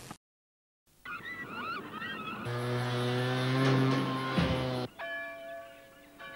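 A short silence, then a few squawking bird calls. A long, steady, low horn note follows, held about two and a half seconds, then a shorter, thinner note.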